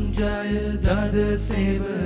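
A hymn: a voice singing a slow melody over sustained instrumental accompaniment.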